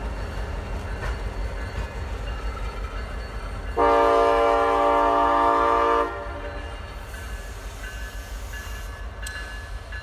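CSX freight diesel locomotives rumbling as they pull away, with one loud air-horn blast lasting about two seconds, a few seconds in.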